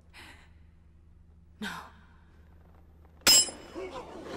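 Two soft breaths over a faint low drone, then a sudden sharp metallic strike with a brief ringing tail a little after three seconds in: a blade-impact sound effect in a film soundtrack.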